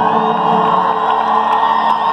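A rock band's electric guitars hold a sustained chord while a concert crowd cheers and whoops.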